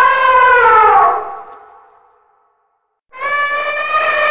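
Elephant trumpeting: a loud, brassy call that holds, then falls in pitch and fades out about two seconds in. After a short silence a second steady call begins near the end.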